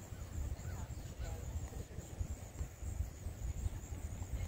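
Low, uneven rumble of wind on the microphone, with a few faint bird calls about a second in.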